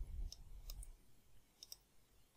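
Faint computer mouse clicks, a few separate ones, then two in quick succession near the end.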